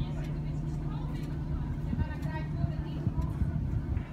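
Motorboat engine running with a steady low hum, under the chatter of several people's voices.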